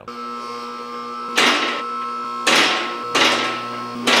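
Two-post car lift's electric hydraulic power unit running steadily as it raises the unloaded lift arms, testing a fresh balance-cable adjustment. Four louder noisy bursts come over the hum, roughly a second apart.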